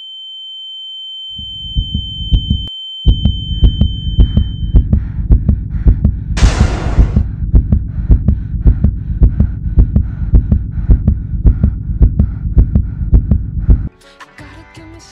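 Film sound-design effects of a dazed moment: a steady high ear-ringing tone that stops about five seconds in, over a deep heartbeat that starts about a second in, breaks off briefly, then beats about twice a second. A short hiss comes about six seconds in, and the heartbeat cuts off suddenly at the end.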